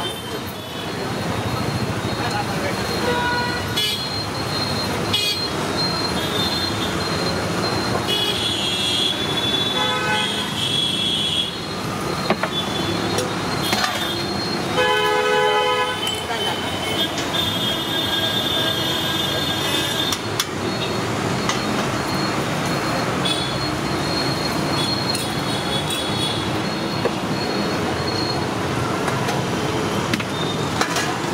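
Street traffic noise with vehicle horns sounding several times, the clearest a horn blast of over a second about halfway through.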